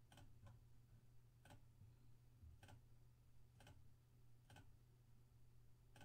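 Near silence with faint computer mouse clicks, about one a second, over a steady low hum.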